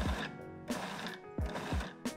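Background music: held notes over deep drum hits.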